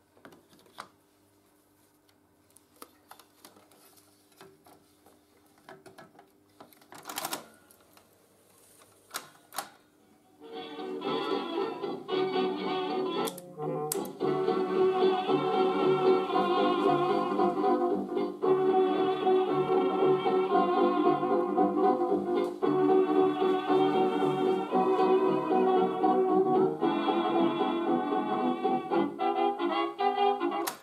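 Faint clicks and knocks as a tape reel is fitted and threaded on a Grundig TK149 valve reel-to-reel recorder, then from about ten seconds in, music playing back from the tape through the machine's built-in speaker, thin with no high end. The tape is running again on its newly replaced drive belt.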